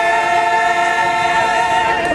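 A small group of voices singing a gospel worship song together, holding one long note that ends near the end.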